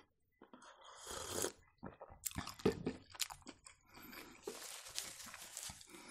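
Close-up eating sounds: a sip of tea about a second in, then soft chewing of fried-dough baursaki with small wet mouth clicks.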